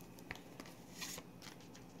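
Faint handling of a picture card: a few light clicks and brief rustles as it is picked up and set on a wooden tabletop.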